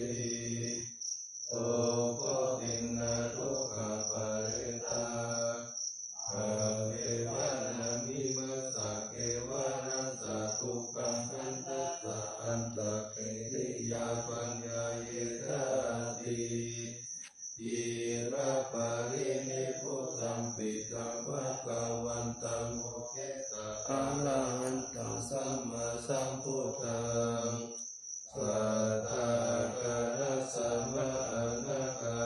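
Thai Buddhist morning chanting (tham wat chao) in Pali: a steady chanted recitation, broken by a few short pauses for breath.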